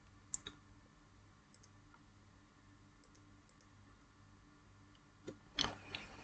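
Near silence with a few faint, sharp clicks: computer mouse clicks, two about half a second in and a few fainter ones later.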